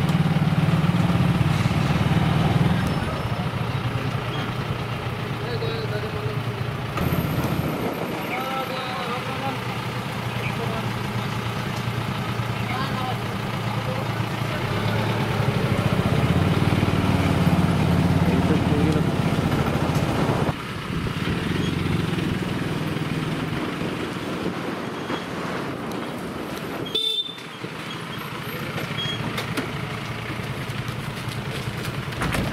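A police jeep's engine running steadily close by, with people's voices over it; the sound changes abruptly a few times where the footage is cut.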